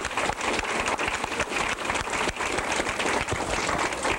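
Large audience applauding, a dense, steady patter of many hands clapping at the end of a talk.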